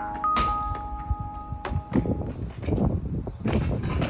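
Held chime-like music notes under several sharp thuds and knocks: a parkour practitioner's body hitting a brick wall and falling into the gap beside it in a bail.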